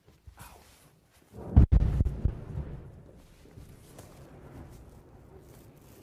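A large explosion about a second and a half in: a sudden deep boom that rolls away over the next second or so into a low lingering rumble.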